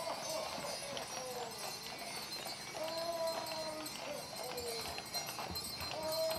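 Percheron draft horses' hooves clip-clopping at a walk on a paved street, with a few distant voices calling out.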